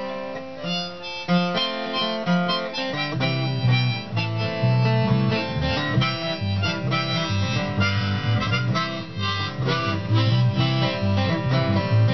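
Instrumental folk song intro: a harmonica on a neck rack plays the melody over a strummed acoustic guitar. A bass guitar comes in about three seconds in.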